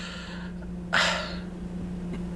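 A man's sharp, breathy snort of laughter about a second in, with a softer breathy exhale before it, over the steady low hum of a car's cabin.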